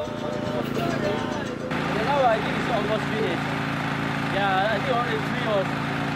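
Background music briefly, then, from a cut under two seconds in, a small engine running steadily at an even pitch, with people talking over it.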